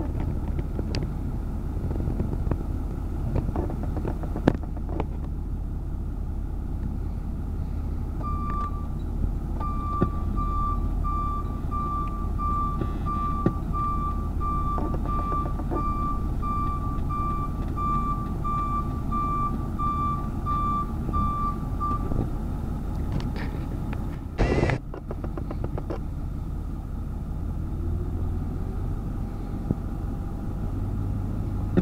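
A vehicle's reversing alarm beeping at an even pace, about one and a half beeps a second, over a steady low engine rumble of heavy machinery. The beeping starts about eight seconds in and stops about fourteen seconds later. A brief rush of noise follows.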